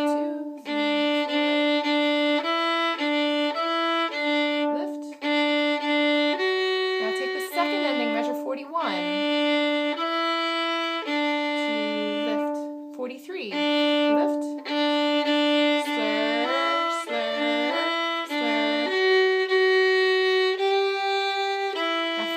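Solo violin playing the second violin part of a march: a run of short, evenly bowed repeated notes, mostly on one low pitch with steps up and back, turning to longer held notes in the last few seconds.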